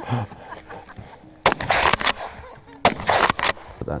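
Two rifle shots with sharp cracks about one and a half seconds apart, the second followed by a couple of quick further cracks, after a brief laugh.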